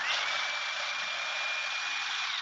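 Ninja personal blender's motor running at full speed with the cup held pressed down, blending a thin oil-and-vinegar salad dressing. A steady whirring with a high whine that rises as the motor spins up at the start.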